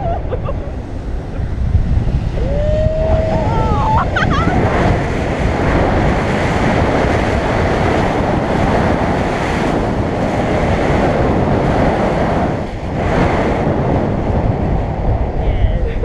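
Loud wind rushing over the camera microphone as a tandem paraglider spirals down at speed, easing briefly about three-quarters of the way through. A person whoops once with a rising voice about three seconds in.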